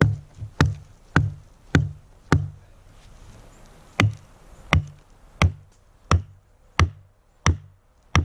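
A hatchet striking an upright wooden log stake, a steady series of sharp knocks at roughly one and a half blows a second, with a short pause about halfway through. This is the stake being set into the vertical-log wall of a lean-to.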